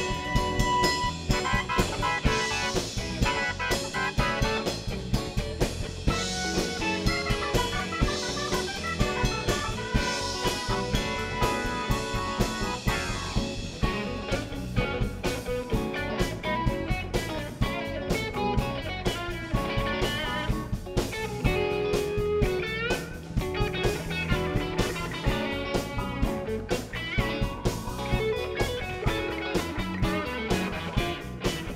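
Live blues band playing an instrumental section: electric guitars, bass, drum kit and keyboard, over a steady drum beat.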